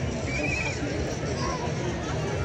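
A horse whinnying once, a short quavering high call about half a second in, over the steady chatter of a large crowd.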